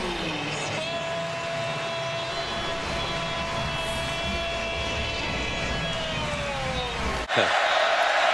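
Football stadium crowd noise from a TV broadcast, under one long held pitched note that slides down after about five seconds. The sound cuts off suddenly near the end.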